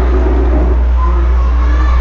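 A loud, steady low hum with faint, indistinct voices over it.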